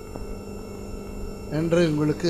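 Steady electrical mains hum from the microphone and sound system fills a pause in speech. A man's voice comes back in about one and a half seconds in.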